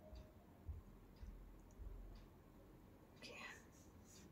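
Near silence: room tone, with a few faint low bumps and one brief soft breathy sound near the end.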